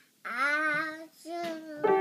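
A toddler's voice singing one drawn-out wavering note, then a shorter one; near the end several keys of an upright piano are struck at once and ring on.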